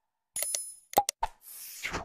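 Outro sound effects: a bell-like ding about half a second in, two quick plops about a second in, then a rush of hiss near the end.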